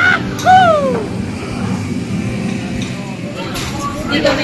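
A person's voice gives a short exclamation that falls in pitch about half a second in, over the steady low din of a busy dining area.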